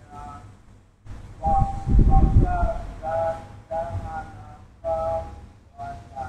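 A group of voices, fainter than the leader, chanting back a Sanskrit verse line in call-and-response, syllable by syllable. A brief low rumble comes about one and a half seconds in.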